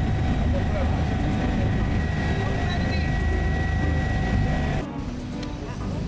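Steady low rumble of an aircraft's engine heard inside the cabin, with a thin steady whine over it. It cuts off sharply about five seconds in, giving way to quieter outdoor background noise.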